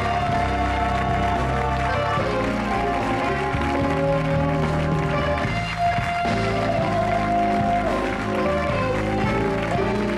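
House band playing the show's closing music, with electric guitar, bass and drums.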